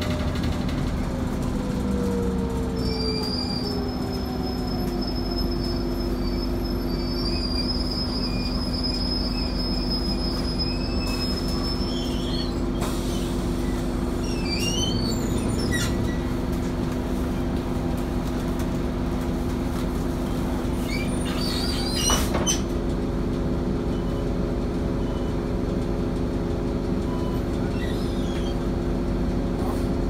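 Cabin noise of an RTS diesel transit bus: a steady drivetrain hum, with a whine that falls in pitch over the first few seconds as the bus slows. A thin high squeal runs through the first dozen seconds. Short squeaks and rattles come and go, with a brief clatter a little past the middle.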